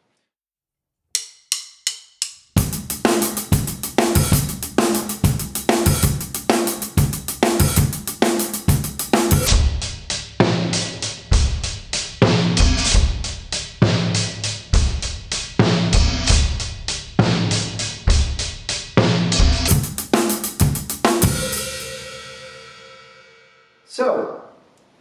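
Acoustic drum kit playing a groove in 11/16: steady sixteenth notes on the hi-hat grouped 3-3-3-2, with bass drum and accented snare hits, after a few count-in clicks. The groove stops a few seconds before the end on a cymbal hit that rings out and fades.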